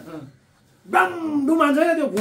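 A man's voice, speaking in an animated way after a brief pause.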